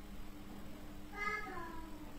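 A single short, high, meow-like call, under a second long, that falls in pitch at its end, over a faint steady hum.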